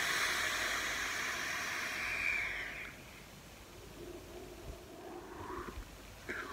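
Long draw on a rebuildable Pulse vape mod with a single Juggernaut-wire coil at 0.26 ohms and its airflow almost fully open: a steady airy hiss of air pulled over the firing coil for about three seconds, then a fainter exhale of the vapour.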